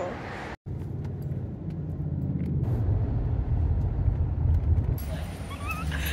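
Low, steady vehicle rumble that starts after a brief dropout and holds for about four seconds, with faint voices coming in during the last second.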